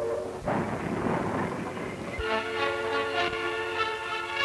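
Steam locomotive approaching with a loud rush of steam and rail noise for about two seconds, on an old film soundtrack. About two seconds in, orchestral music with strings starts.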